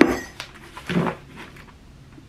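A sharp knock right at the start as an envelope bumps against teeth, then a smaller click and light paper handling, with a short vocal sound about a second in.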